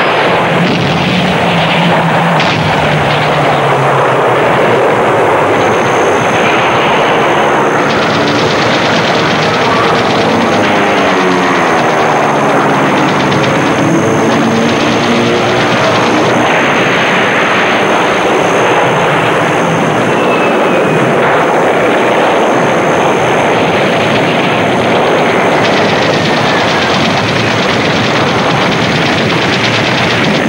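Battle sound of a wartime air attack on a ship: continuous noise of warplane engines mixed with gunfire. About ten seconds in, an aircraft engine's note sweeps through several seconds of pitch changes as a plane passes.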